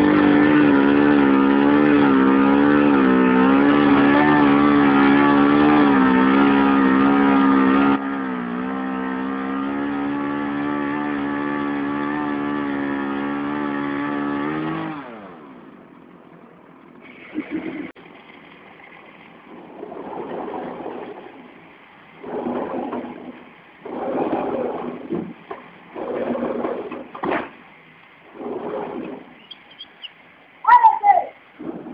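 Crane truck's engine running hard under load, a loud steady drone with a slightly wavering pitch as it drags a heavy tree stump. It drops in level about 8 seconds in, then winds down in pitch and stops about 15 seconds in, leaving quieter irregular bursts of sound.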